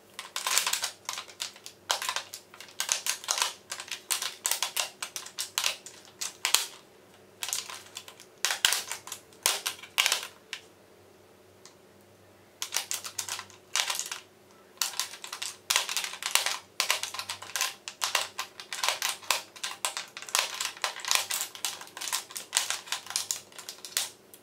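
Plastic lipstick tubes and liquid-lipstick bottles clicking and clacking against each other and a clear acrylic organizer tray as they are picked up and set back in rows. The taps come in quick irregular clusters, with a pause of about two seconds around the middle.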